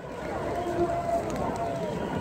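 Faint, indistinct voices over steady outdoor background noise, with no loud amplified speech.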